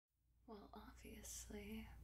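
A woman speaking softly in a near-whisper, starting about half a second in, over a steady low hum.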